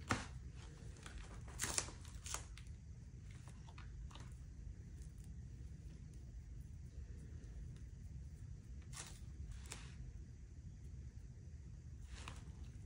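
Layers of frayed Kevlar armor fabric rustling and crinkling as they are handled and peeled apart by hand. There are a few sharp crackles in the first two and a half seconds and two more about nine seconds in, over a low steady hum.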